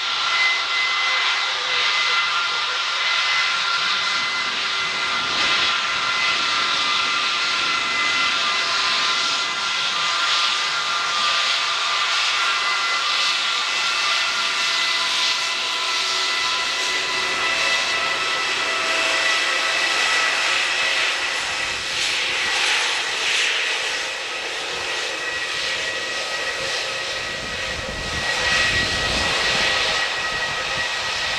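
Airbus A320neo's Pratt & Whitney PW1100G geared turbofans at taxi thrust, a steady whine made of several high tones over a jet hiss. Near the end a deeper rumble builds as the exhaust swings toward the microphone.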